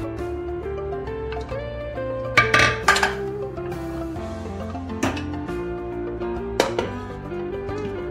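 Background music with a steady melody, over which come a few sharp metallic clinks, around three seconds in, at five seconds and again shortly before seven seconds, as the aluminium pressure cooker pot and its fittings are handled.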